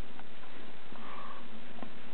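Steady background hiss with a toddler's soft breathing or sniffing close to the microphone, and a couple of faint clicks.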